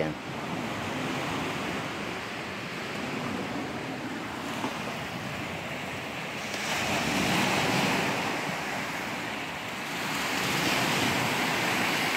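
Waves washing up on a sandy beach, a steady rush that swells louder twice, about six seconds in and again near the end.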